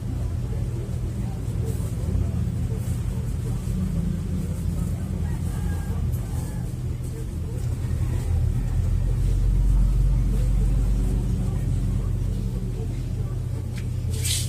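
A steady low motor rumble, like an engine running, swelling louder around the middle and easing off again, with faint rustling of clothes being handled.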